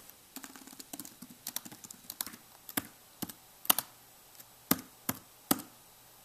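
Typing on a computer keyboard: a quick run of light keystrokes, then slower, louder single key presses about half a second apart near the end.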